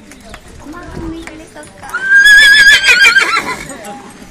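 A horse whinnying close by: one loud, wavering neigh starting about two seconds in, lasting about a second and a half and dropping in pitch at the end. Hooves clop on the paved road throughout.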